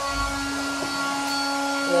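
A motor running steadily: a constant hum with several steady higher whining tones, unchanged throughout.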